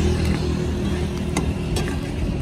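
A steady low engine rumble from a nearby motor vehicle, with a few sharp metal clinks of a ladle against a steel wok as a curry is stirred.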